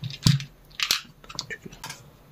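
Hands handling a small plastic spool of fishing line and pulling line off it: four short, sharp crackling clicks about half a second apart.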